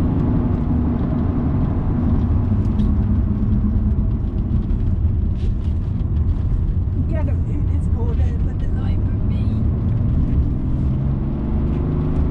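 Inside-cabin sound of a BMW 330d Touring's three-litre straight-six turbodiesel driven hard on a circuit: a steady heavy rumble of engine and tyres. The engine note drops over the first couple of seconds and climbs again near the end as the car accelerates.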